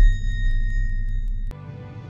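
Tail of a news channel's electronic logo sting: a deep low rumble fading away under a steady high ringing tone, with faint regular ticks. About one and a half seconds in it cuts off suddenly to soft background music.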